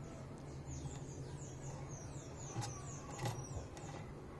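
A small bird chirping faintly: a run of quick, high, falling notes, about four a second, ending near the end. Two light clicks about two and a half and three seconds in are the loudest moments.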